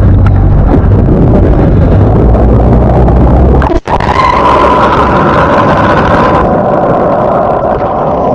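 Boat engine running at the side of the hull, with a heavy low rumble and wind on the microphone. About four seconds in the sound cuts off sharply, then comes back muffled underwater: a steady rushing hiss with a whine in it, easing near the end.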